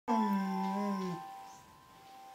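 A dog howls along with piano keys it has pressed. The wavering howl lasts about a second and drops off, while two piano notes ring on steadily.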